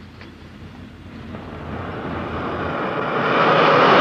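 A car approaching, its engine and road noise growing steadily louder and loudest near the end as it passes close by.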